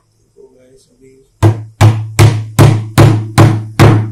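Hammer blows on the end of a screwdriver set in the hub of a washing machine's plastic pulsator, knocking out its worn bush. Seven sharp strikes, about two and a half a second, start about one and a half seconds in, each with a short low ring.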